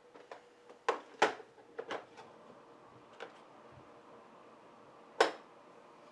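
Small knocks and clicks of art supplies being handled on a work table: a few about a second in, and one sharper, louder knock near the end.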